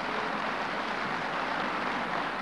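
Parliament deputies applauding: a steady, even clapping from many hands.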